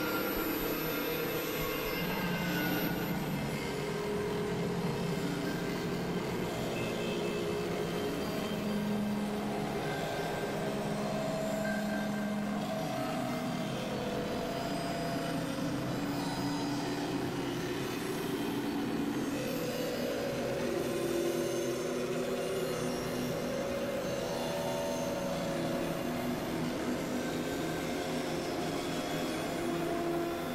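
Experimental synthesizer drone: layered sustained tones that shift to new pitches every few seconds over a dense, steady noisy wash.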